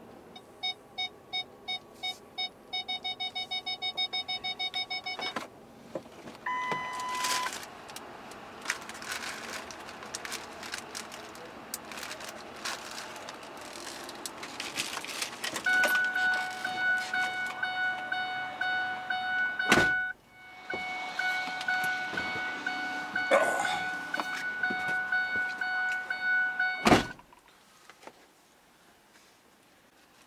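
A pickup truck's electronic warning sounds: a run of beeps that quicken over the first five seconds, one short higher beep, then a steady chime that sounds for about eleven seconds. A sharp knock comes partway through the chime, and another knock cuts it off.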